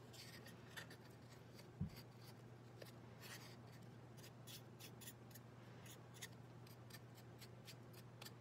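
Faint, short scratchy strokes of a flat paintbrush working thick acrylic paint across a small square tile, repeated irregularly over a low steady hum, with one soft thump about two seconds in.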